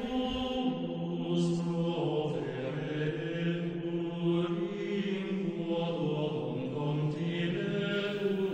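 Slow male chanting in long held notes that shift pitch every second or two, a church-style chant used as background music.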